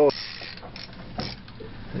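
Fishing reel ratcheting with irregular mechanical clicks and creaks as a hooked spring salmon runs and takes line.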